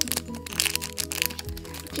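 Clear plastic bag around a squishy toy crinkling and crackling as it is handled, over background music with steady held notes.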